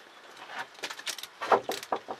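Aluminium cooking vessels clinking and knocking together as they are handled, in an irregular run of sharp clicks with the loudest knock about one and a half seconds in.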